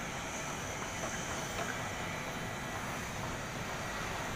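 Steady background noise of a high-rise construction site: a continuous, even machine-and-city hum with a faint high steady whine and no distinct knocks or strikes.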